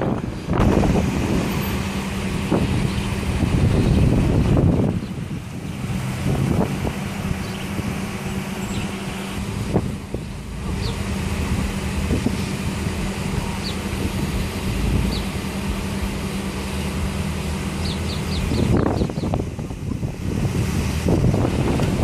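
Steady hum of an idling vehicle engine, over street traffic and wind buffeting the microphone; the hum stops a few seconds before the end.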